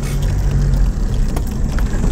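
Car engine pulling in four-wheel-drive low range and tyres rumbling over a rough dirt road, heard from inside the cabin, with a couple of short knocks in the second half.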